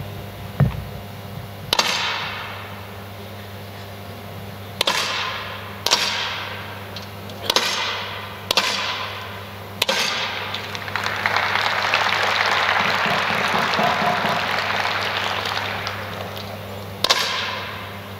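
10 m air rifle shots in a large shooting hall: about seven sharp cracks at uneven intervals, each ringing on for about a second. Between the sixth and seventh crack a broad rush of noise swells and fades over about five seconds, over a steady low hum.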